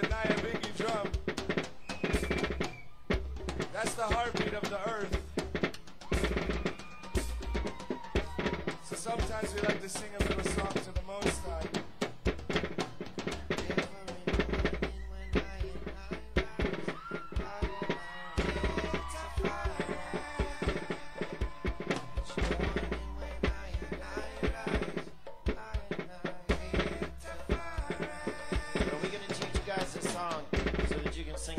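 Hand drums played in a busy, fast rhythm of strikes, with voices over the drumming.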